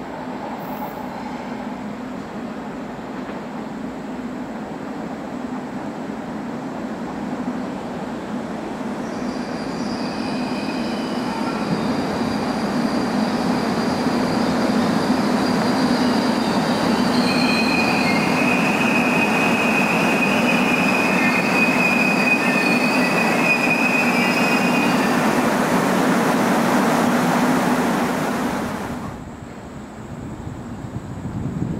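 Korail electric commuter train approaching and running along the platform, growing louder over the first half, with steady high-pitched squealing from its wheels from about ten seconds in. The sound cuts off abruptly near the end.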